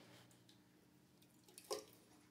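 Near silence: room tone, with one brief faint sound near the end.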